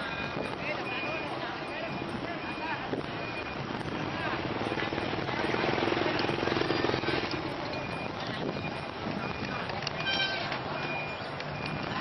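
Ngo racing-boat crew paddling in rhythm: many voices calling the stroke over paddles splashing in the water, with a short high whistle-like tone recurring every second or so.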